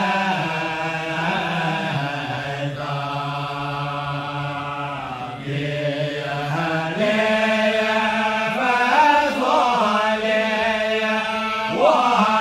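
A man's voice chanting Arabic Islamic devotional text in long, held melodic notes. The pitch settles onto a lower note for several seconds in the middle, then rises back to the higher note.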